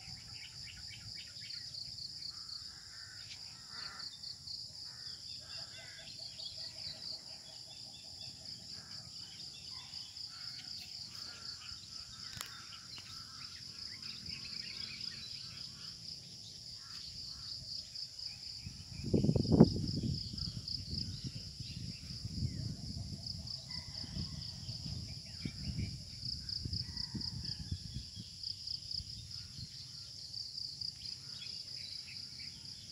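A steady chorus of insects with a fast, pulsing high trill, with scattered bird calls over it. About two-thirds of the way through a brief loud low sound stands out, followed by a few seconds of uneven low rumbling.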